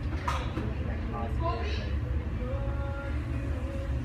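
Faint, indistinct speech over a steady low rumble.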